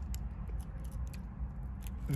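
Low steady hum of a car's cabin, with a few faint light clicks scattered through it.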